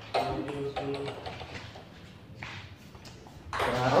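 Table tennis ball clicking off the paddles and the table during a rally: a quick run of sharp taps in the first second or so, then a few more scattered clicks.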